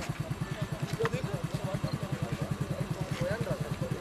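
A small engine idling with an even, fast throb, under the scattered voices of several people talking.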